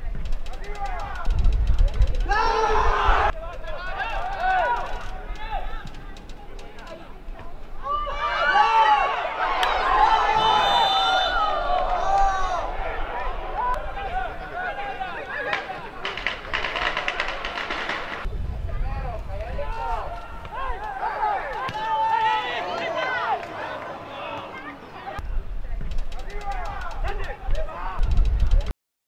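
Men's voices talking and calling out during football play, at times several at once, with a low rumble under them in places.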